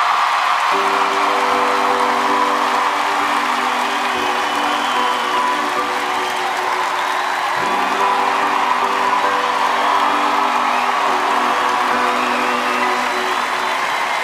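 An audience applauding and cheering over sustained music chords. The chords come in about a second in and shift to a new chord around the middle.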